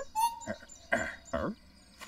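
Brief animal-like cartoon vocalizations: a short high note, then three quick whimpering calls about half a second apart, each falling in pitch.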